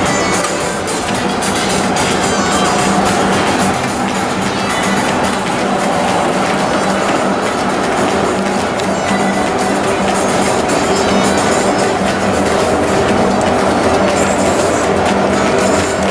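Instrumental background music with a held low drone note under a busy melody.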